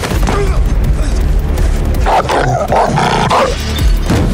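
Action-film soundtrack: a music score with a steady deep bass, a few short knocks of sound effects, and a loud, rough cry about two seconds in that lasts just over a second.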